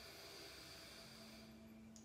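Near silence: a faint, soft inhale through one nostril, the right, as part of alternate nostril breathing, ending shortly before the next spoken cue.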